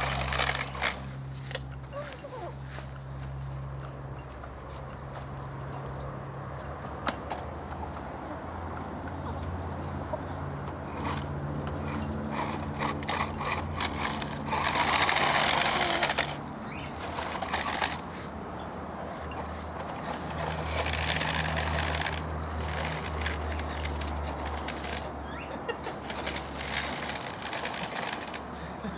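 Domestic hens clucking and pecking at grain in a bowl riding on a toy remote-control car, their beaks tapping in scattered clicks. A louder rushing noise lasts about a second near the middle and comes again, softer, a few seconds later.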